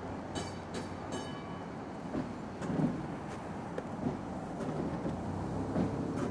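A streetcar running on its rails with a steady low rumble, three short high metallic squeals about half a second to a second in, and a few dull knocks later.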